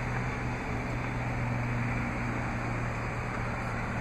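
Steady hum of the Jeep Cherokee's 3.2-liter Pentastar V6 idling after a remote start, with a low even drone.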